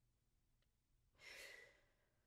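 A woman's faint, short sigh, a soft breath out lasting about half a second, a little over a second in; otherwise near silence.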